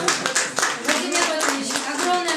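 Small audience applauding, many irregular hand claps, with voices talking over it.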